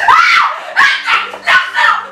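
Actors' loud, high-pitched wordless shouts and cries, short and one after another, as in a struggle on stage.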